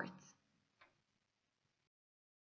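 Near silence: the tail of a narrator's voice fades out, then one faint short click a little under a second in, and the sound cuts to dead silence near the end.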